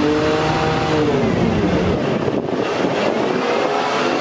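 A motor vehicle engine running close by, its pitch slowly rising and falling over a steady rumble.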